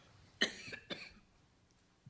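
A person coughing twice, about half a second apart, the first cough the louder.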